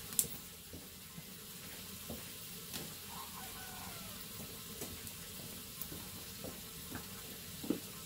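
Faint steady hiss of background noise, broken by a few light knocks and clicks.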